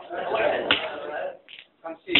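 Excited voices with a sharp slap about a third of the way in, a dama (draughts) piece struck down on the wooden board, followed by a few lighter clicks of pieces near the end.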